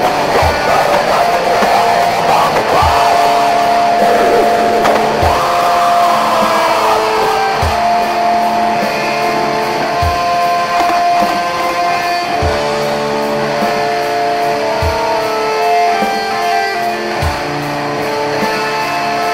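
Black metal music: sustained guitar chords held over a slow, steady drum beat, a low hit about once a second.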